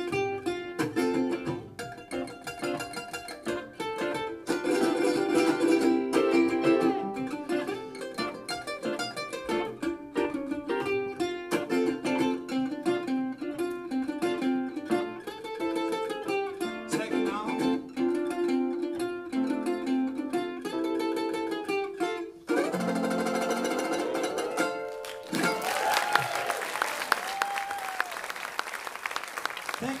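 Ukulele and lap steel guitar playing an instrumental passage of quick plucked notes, ending on a held, sliding chord about three-quarters of the way through. Audience applause follows to the end.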